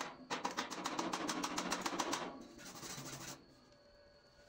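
Hand wire brush scrubbing fast back and forth over a fresh stick weld on steel tube, cleaning the slag and spatter off the bead. It stops about three and a half seconds in.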